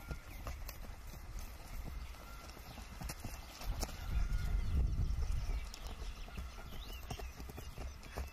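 Footsteps of several players running on grass: irregular soft thuds and scuffs, with a louder low rumble near the middle.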